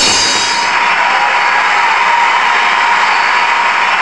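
Techno music playing loud through Tonsil Altus floor-standing loudspeakers during a breakdown. The kick drum has dropped out, leaving a steady hiss-like synth wash with a faint held tone and no bass.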